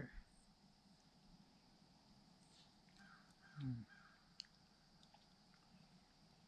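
Near silence with faint ambient hiss; a distant bird calls faintly about halfway through.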